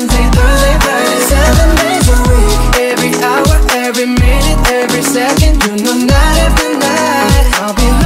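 Pop/R&B song: a male lead voice sings the chorus over a beat of deep bass notes that slide down in pitch and crisp ticking percussion.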